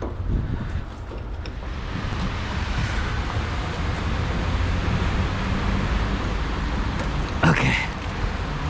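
Steady low rumble of wind on the microphone mixed with street noise, with a short louder sound near the end.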